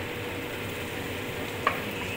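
Sliced onions and minced garlic sizzling steadily in hot oil in a nonstick frying pan as they are stirred with a wooden spoon. There is one light click near the end.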